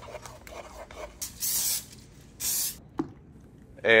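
Two short hisses of aerosol nonstick cooking spray, the first about a second in and lasting a little longer than the second, followed by a single click. Faint stirring of a thick mixture in a pot comes before them.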